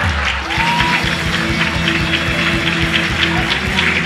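Music with steady held bass notes and a long sustained tone, over audience applause.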